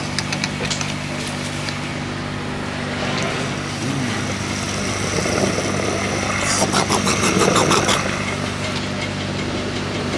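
Petrol station fuel dispenser pumping fuel into a car's filler neck: a steady motor hum under the rush of flowing fuel, with a spell of clattering about seven seconds in.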